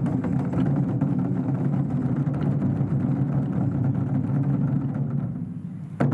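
Taiko drums played in a fast continuous roll, a dense low rumble without separate strokes that fades over the last second.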